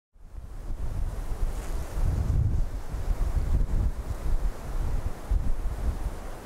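Wind buffeting the microphone on open grassland: a low, gusty rumble that rises and falls, with a fainter rushing hiss above it.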